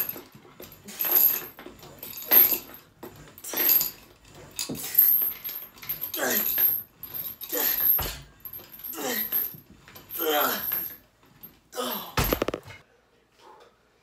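A man's strained grunting exhalations, one with each leg extension rep, about one every 1.3 seconds and each falling in pitch, with light metallic clinks from the home gym's weight stack. Near the end a heavier low thud as the stack comes down at the end of the set.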